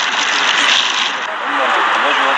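Several men's voices talking over one another against a steady rushing background noise.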